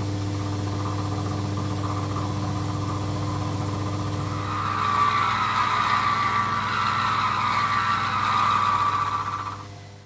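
Milling machine spindle motor running with a steady hum while an end mill cuts the end face of a cast iron block. From about halfway in the cut grows louder and higher in pitch, then stops shortly before the end. The maker judges it fed a bit too fast.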